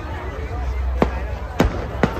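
Fireworks bursting overhead: two sharp bangs, the first about a second in and the second about half a second later.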